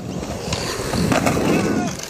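Skateboard wheels rolling on concrete: a steady rumble with scattered clicks, a little louder in the second half.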